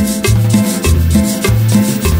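Instrumental passage of a cumbia sonidera song: a bass line bouncing between two notes under repeated keyboard chords, driven by a steady scraped güiro rhythm.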